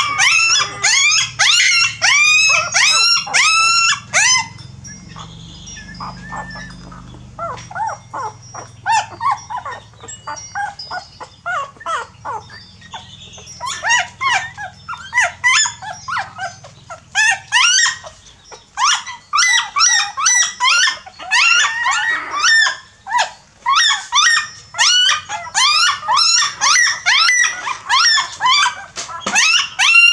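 A litter of young puppies whining in high-pitched cries, several calls a second. The cries drop to a softer, sparser stretch from about five seconds in, then come back loud and dense from about thirteen seconds on.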